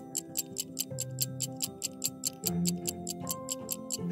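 Countdown stopwatch sound effect ticking rapidly and evenly, about five ticks a second, over soft sustained background music.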